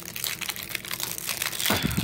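Clear plastic shrink wrap on a vape kit's box crinkling and crackling as it is worked off by hand, with a louder flurry of crackles near the end.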